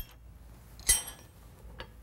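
A steel hex nut clinking against the washer and handle as it is set onto the valve stem: one ringing metal clink about a second in, with a lighter tick near the end.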